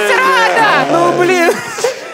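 Lively speech: people at the table talking excitedly over one another, dipping briefly about a second and a half in.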